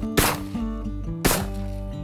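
Two shotgun shots about a second apart, fired at flushing pheasants; the pair is a double, a bird brought down with each shot.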